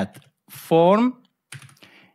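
Typing on a computer keyboard: a few light keystrokes, the clearest of them near the end. A man says one word about half a second in, louder than the typing.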